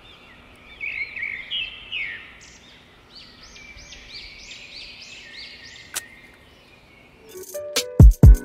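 Birds chirping outdoors in short, repeated arched notes, about three a second, over a faint background hiss, with one sharp click about six seconds in. Music with a strong beat starts near the end.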